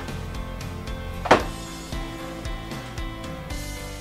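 Soft background music with sustained notes, and one short, sharp thump a little over a second in.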